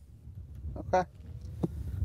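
Wind rumbling on the microphone, with one sharp click about a second and a half in.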